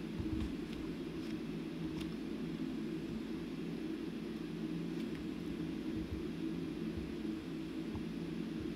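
Steady low background hum of room tone, with a few faint clicks.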